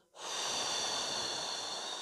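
A woman's long, slow exhale through the mouth, a controlled breath out timed with an exercise movement. It begins just after the start as one steady hiss that gradually fades.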